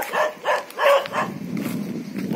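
A dog barking, about four quick barks in the first second, then softer.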